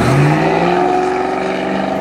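A motor vehicle's engine accelerating close by, its pitch rising steadily throughout.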